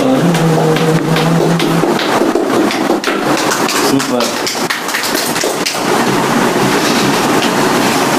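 A man's sung note held for about two seconds, then a small group clapping rapidly together with voices.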